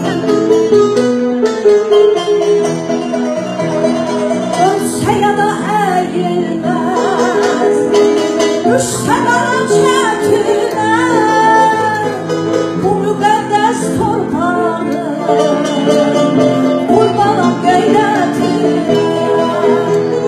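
Women's voices singing a song together over a plucked string instrument accompaniment.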